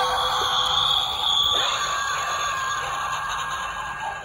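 Pennywise 'Hidden Screamer' novelty head, set off by pressing the button in its chin, letting out a long electronic scream that starts suddenly and fades out near the end.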